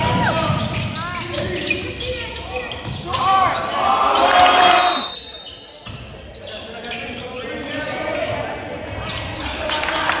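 Basketball dribbled on a hardwood gym floor, with sneakers squeaking and players' voices ringing in a large gym. The sound dips briefly about halfway through.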